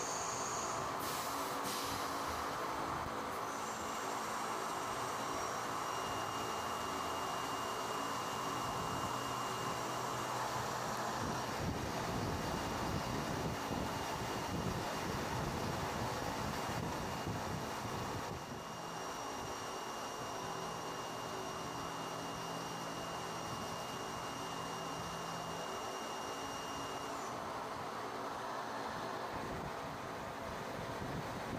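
CNC vertical machining center milling a slot in a metal receiver under flood coolant: a steady machine noise with coolant spray hiss and a thin high whine. The sound shifts about two-thirds of the way in.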